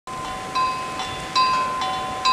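Metal wind chimes knocked by gusting wind, struck four times at uneven intervals, the notes ringing on and overlapping, over a steady hiss of blizzard wind.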